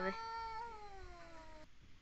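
A domestic cat's long drawn-out yowl, the threatening caterwaul of a cat squaring off with another cat. It slowly sinks in pitch and fades, then cuts off shortly before the end.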